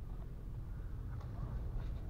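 Ram 1500 pickup's engine running at low speed as the truck moves off, a low steady rumble heard inside the cab.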